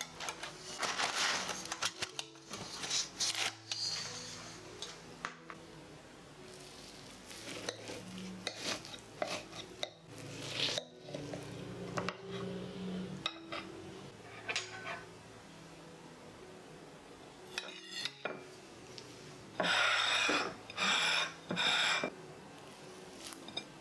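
Metal bakeware and utensils clinking and scraping: the cake pan handled on a wire rack, then a knife cutting through the baked apple cake and scraping on the plate, with a louder stretch of scraping near the end.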